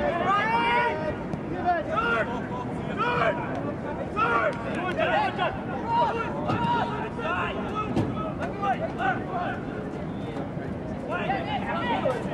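Several voices calling and shouting over one another on a soccer field, players and sideline onlookers, over open-air field noise.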